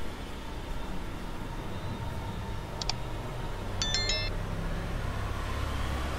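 Steady low rumble of distant street traffic carried into the house, with a pair of short high clicks about three seconds in and a quick run of short high-pitched beeps about a second later.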